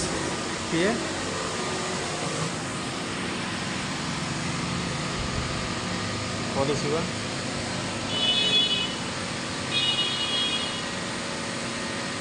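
Steady hum of an SKE three-motor semiautomatic glass beveling machine's electric motors running, with coolant water flowing. Two short high-pitched whines, each under a second, come about eight and ten seconds in.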